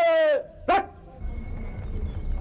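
A shouted drill command: one long call held at a steady pitch, breaking off about half a second in, then a short second shout.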